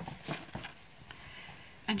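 Faint, light knocks and rustling as craft supplies, a plastic ink pad and a cloth, are handled on a tabletop, a few small taps in the first second.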